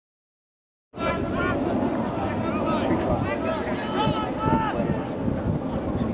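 Silence for about the first second, then an outdoor rugby match on a camcorder microphone: wind rumbling on the microphone, with repeated shouts and calls from players and spectators.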